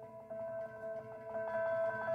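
Soft instrumental opening of a song: two held notes under a higher note that pulses rapidly, gradually getting louder.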